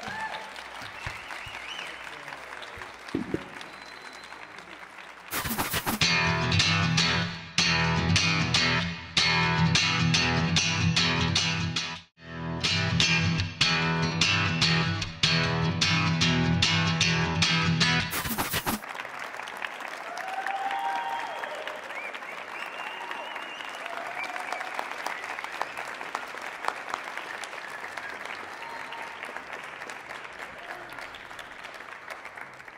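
Audience applauding. About five seconds in, a loud guitar-led music sting with a steady beat begins: the programme's return bumper. It cuts off suddenly after about thirteen seconds, and the applause carries on.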